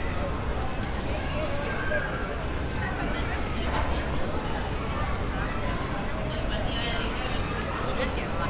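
City street ambience: a steady low rumble of traffic with indistinct chatter of people nearby.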